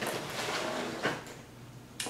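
Backpack being lifted and turned upright by hand, its fabric and straps rustling and scraping; the handling noise dies down about a second in.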